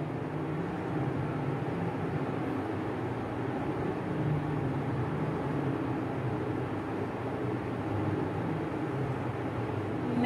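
Steady background noise with a low hum underneath, with no distinct events.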